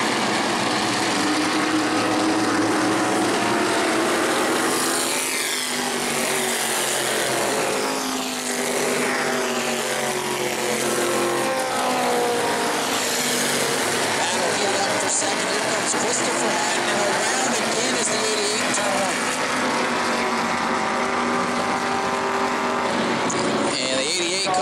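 Several short-track stock-car engines at racing speed, the field running under green after a restart. Their pitch rises and falls over and over as cars accelerate off the turns and pass by.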